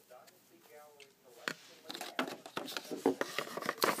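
Metal costume-jewelry rings clicking and rubbing against one another and the box as they are handled in a foam-lined jewelry box, a quick run of small clicks starting about a second and a half in.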